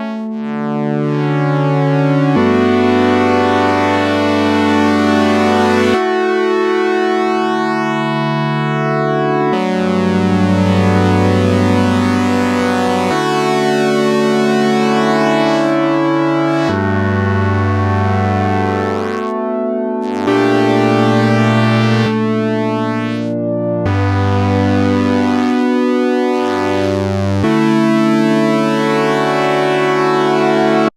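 GForce OB-E software synthesizer, an emulation of the Oberheim 8-Voice, playing a layered two-part patch as a slow run of sustained chords that change about every three to four seconds. Its voices are panned apart and its vintage control is being raised, which slightly varies each voice's settings.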